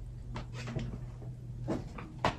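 A few short, soft knocks over a low steady hum.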